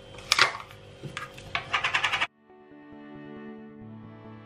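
Clicks and scrapes of a glass instant-coffee jar being handled and its plastic lid opened, for about two seconds. The sound then cuts off suddenly and soft instrumental background music plays.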